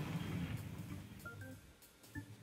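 A faint low hum fading away, with a few soft, quiet music notes coming in during the second half.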